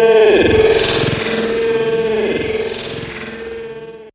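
Final seconds of a hardcore techno remix: a held synthesizer note with a few heavy beats, fading away and cutting off at the end.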